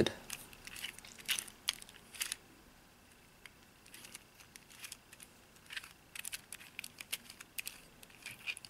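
Plastic twisty puzzle turned by hand: a 3x3x2 built from two fused 2x2 puzzles with 3D-printed extensions, its layers clicking and scraping in short flurries of turns, with a pause about two and a half seconds in.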